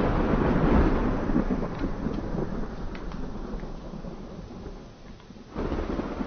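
Thunder rolling and slowly fading after a loud clap, with a second rumble swelling up near the end.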